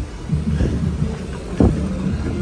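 Wind and handling noise on a hand-held phone microphone carried by a running person: an uneven low rumble with irregular thumps, and a sharper knock about one and a half seconds in.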